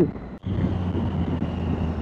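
Triumph Tiger 800 XRX's three-cylinder engine running at a steady, even pitch while the bike rolls along, with no revving up or down. The sound drops out briefly about half a second in.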